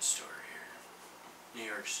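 A man speaking softly, just above a whisper. The word 'city' comes near the end.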